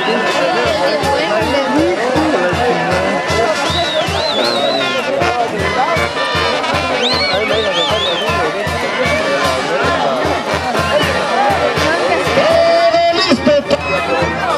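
Brass band music with a steady low beat, over a crowd of voices.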